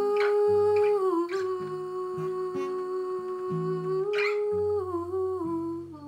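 A woman humming a long held note over plucked acoustic guitar notes, the note stepping down about five seconds in as the guitar carries on.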